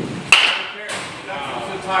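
A baseball bat strikes a ball once in a batting cage, a single sharp crack about a third of a second in.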